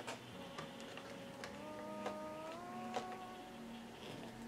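Light, irregular metallic clicks as a metal drawer pull is handled and screwed onto a drawer, over soft background music with long held notes.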